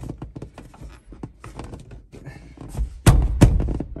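Small clicks and rattles as the soft-top bow of a Bugeye Sprite is worked by hand, then two heavy thunks close together near the end as it is struck to drive it upward and tension the top.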